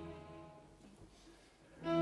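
String quintet of two violins, viola and two cellos playing: a held chord fades away into about a second of near silence, then the ensemble comes back in suddenly and loudly with a sustained chord near the end.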